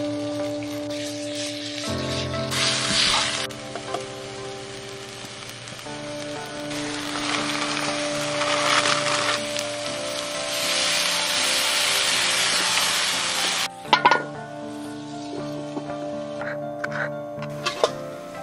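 Food sizzling in a hot wok over a wood fire: a short burst of sizzling about three seconds in, then a longer stretch of sizzling and hissing from about seven seconds that cuts off suddenly near fourteen seconds. Music with held notes plays underneath throughout, and a few sharp clicks come near the end.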